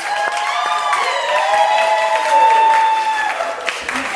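Audience applauding, with long drawn-out whoops and cheers rising and falling over the clapping.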